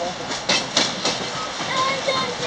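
Running noise inside a vintage passenger railcar moving along the track: a steady rumble and rattle with two sharp knocks from the rails about half a second in.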